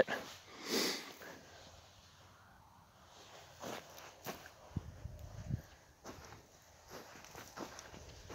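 Mostly quiet, with a short sniff about a second in. A few faint soft steps and small handling knocks follow.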